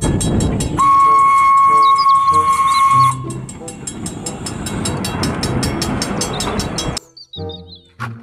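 A passenger train led by a small tank locomotive rumbling past a level crossing while the crossing bell rings in quick, even strokes. About a second in, the locomotive gives one long, steady whistle blast of a little over two seconds. The sound cuts off abruptly about a second before the end.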